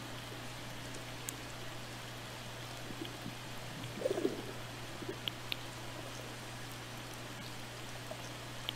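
Underwater ambient sound from a hydrophone: a steady hiss over a constant low hum. About halfway through comes a brief burble, then a couple of sharp clicks.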